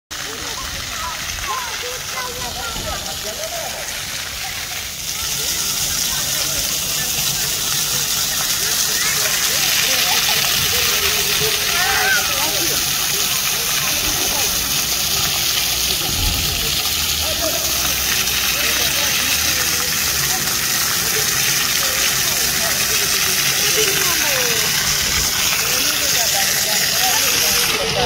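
Ground-level fountain jets spraying up and splashing back onto paving stones, a steady hiss that grows louder about five seconds in.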